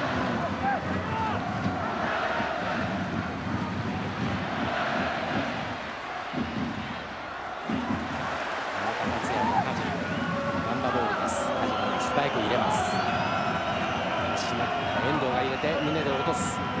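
Football stadium crowd noise: a steady mass of supporters' voices, with chanting that rises and falls in pitch.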